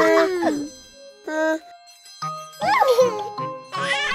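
Short wordless vocal sounds from cartoon children's voices, near the start and again about three seconds in, over light background music.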